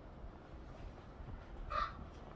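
An eagle giving one short, high call near the end, over a low steady background rumble.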